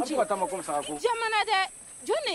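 People talking in a local language that the transcript does not catch, with a higher-pitched voice about halfway through. A steady high hiss from the film's soundtrack runs under the voices.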